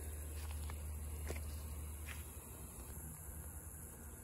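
Faint, steady low rumble of wind on the microphone, with a few soft footsteps on ground cover about half a second, one second and two seconds in.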